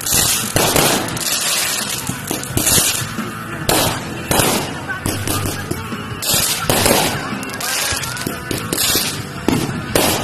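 Consumer fireworks going off: a rapid series of sharp bangs at uneven intervals, sometimes two in quick succession, over a constant noisy background.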